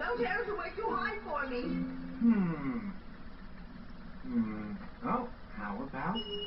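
Animated-film voices making wordless sounds with sliding, falling pitch, over faint background music.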